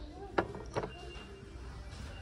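Low steady hum of shop background noise, with two sharp knocks about a third of a second apart early on and a faint short high beep about a second in.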